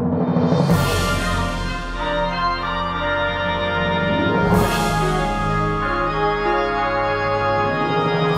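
Instrumental introduction to a choral Christmas carol arrangement: sustained full chords, with bright crashes about a second in and again about four and a half seconds in, before the voices enter.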